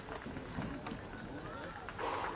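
Faint voices talking, with no music playing.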